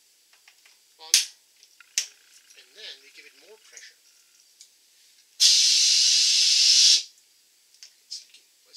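Two sharp clicks of a keg gas quick-disconnect, then a loud hiss of pressurized CO2 escaping from a 5-gallon soda keg for about a second and a half, starting and stopping abruptly: the keg being burped to vent trapped air from its headspace.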